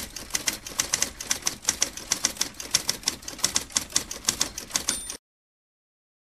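Manual typewriter keys clacking in a fast, uneven run of strikes that stops abruptly about five seconds in.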